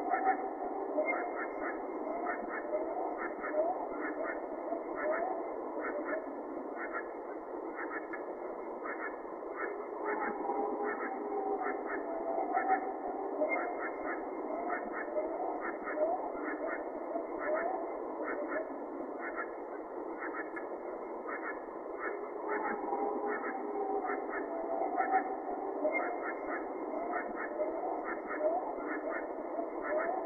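Low-fidelity night recording from a swamp: three times, an unidentified animal gives a drawn-out howl that fades into a series of short whoops. Under it runs a steady night chorus with rapid chirping.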